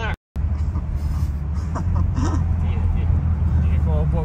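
A moving car heard from inside the cabin: a steady low engine and road drone. The sound cuts out completely for a moment just after the start.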